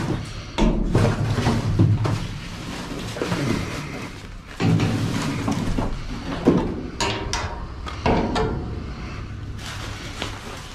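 Rummaging in a steel dumpster: a reaching tool and gloved hands drag a plastic bag and cardboard boxes across the bottom, with irregular scrapes, rustling and several sharp knocks against the metal, loudest a little past halfway.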